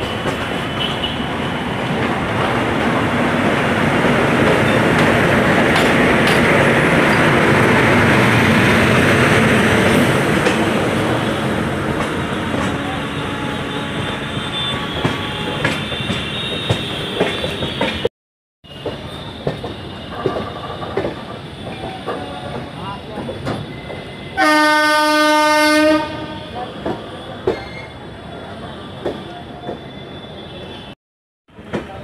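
Train running noise heard from the open door of a moving passenger coach, loudest in the first ten seconds as a WAP-7 electric locomotive passes close on the next track, then quieter, with wheels clicking over rail joints and points. A train horn sounds once for about a second and a half, late on.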